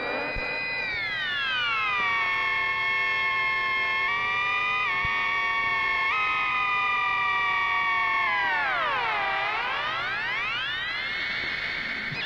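Electronic music: one held electronic tone with many overtones that slides slowly down over the first two seconds, holds nearly level, then dips and swoops back up about nine seconds in.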